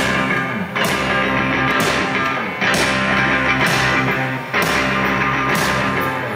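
Live indie rock band playing an instrumental passage, loud, with electric guitar and bass guitar and strong accents about once a second; no singing.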